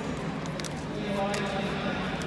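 Voices of coaches and spectators calling out during a full-contact karate bout in a large reverberant hall, with three sharp impacts, near the start, about half a second in and about a second and a half in.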